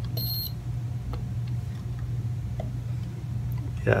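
Multimeter continuity beeper sounding in short, broken beeps as the probes touch the aluminum tape shielding in a guitar cavity, showing electrical continuity. It stops about half a second in, leaving a steady low hum with a couple of faint clicks.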